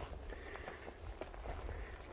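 Faint footsteps on a dry forest floor: soft, irregular crunches, over a low steady rumble.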